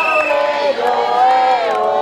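Crowd of protesters chanting a slogan together, with long drawn-out syllables.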